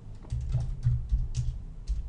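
Typing on a computer keyboard: a quick, irregular run of key clicks with dull low thumps as the keys bottom out, starting a moment in.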